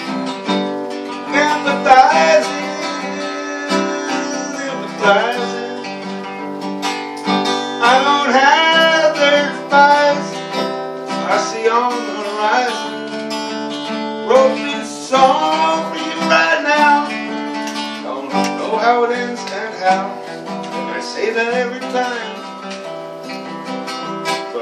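Acoustic guitar played continuously with a man singing along.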